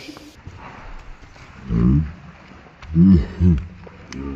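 A man's low grunts of effort: one about halfway through, then two short ones close together near the end.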